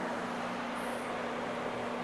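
Rotary carpet-cleaning machine running steadily: a constant motor hum over an even hiss as its microfibre scrub pad turns on commercial loop carpet.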